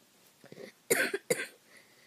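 A boy coughing twice in quick succession, about a second in.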